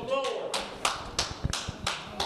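A few hand claps at an even pace, about three a second, starting half a second in.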